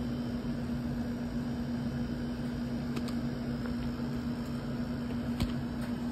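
A steady low machine hum holding one pitch, with a low drone beneath it, and two faint clicks about three and five and a half seconds in.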